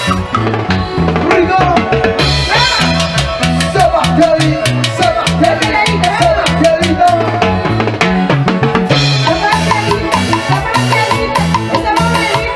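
Live festive band music for dancing: a steady bass and drum beat with a wavering melodic lead line above it.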